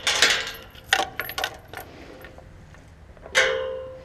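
Steel tube farm gate being handled: a few metal clanks and rattles, then a louder clang a little past three seconds in that rings on briefly.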